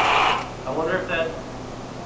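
Electric drive motors of a mecanum-wheeled robot whirring as it drives on carpet, cutting off about half a second in. A faint voice follows.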